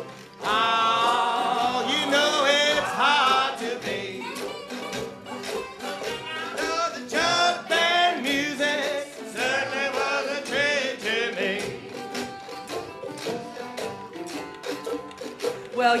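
Jug band playing an instrumental break between sung lines: a wavering melodic lead, loudest in the first few seconds and again midway, over a steady beat of strings and percussion.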